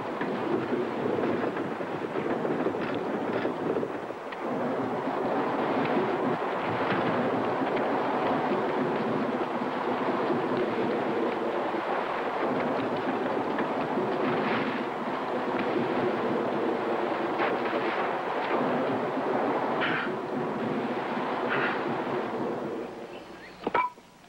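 Galloping team of horses: hooves and wheels make one loud, continuous rumbling din, with a few sharper sounds on top, fading near the end.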